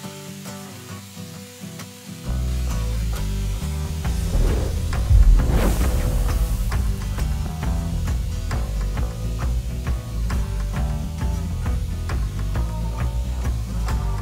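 Background music, with heavy bass and a steady beat coming in about two seconds in. Under it, cognac sizzles in a very hot carbon-steel pan, and about five seconds in there is a loud rushing whoosh as the cognac catches fire in a flambé.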